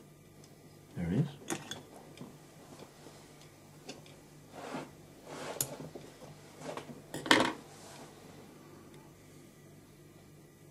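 A few short clicks, clinks and scrapes of fly-tying tools being handled at the vise, the loudest about a second in and a cluster between about four and a half and seven and a half seconds in.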